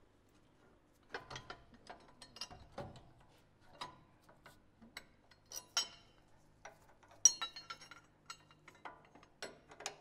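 Hand ratchet clicking in short, irregular runs and steel parts clinking as bolts and caster correction plates are worked into a Land Cruiser's front radius arm mount, with a quick run of clicks about seven seconds in.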